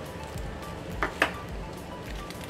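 Background music with a steady beat, and two short clicks about a second in.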